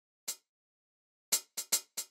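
Programmed hi-hat sample played from a drum rack: one hit, a pause of about a second, then a quick run of hits alternating louder and softer.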